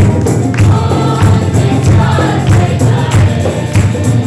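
Congregation singing a Hindi worship song together, with hand clapping and percussion on a steady beat, a little under two beats a second.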